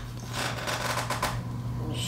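Clear plastic blister pack of a coin-cell battery crinkling and clicking as it is handled with a box cutter, in a quick run of small crackles that thins out in the second half.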